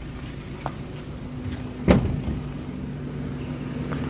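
Suzuki Carry Futura 1.5 fuel-injected four-cylinder engine idling steadily, with one sharp knock about two seconds in.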